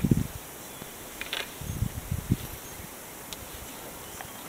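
Quiet handling sounds, a few soft low bumps and a brief rustle, from hands and jacket while a screw-in weight is twisted into a soft rubber pike bait, over a steady outdoor background hiss.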